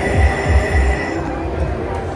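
Thunder Drums Mayan Mask slot machine playing its prize-award music with deep drum hits, three strong ones in the first second, as a Thunder Prize is won. A steady high tone sounds over the first half.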